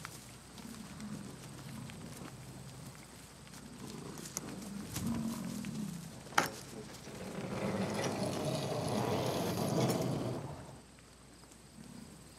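Gaur calling: one long bellow lasting about three seconds, starting about seven and a half seconds in, with a single sharp knock just before it.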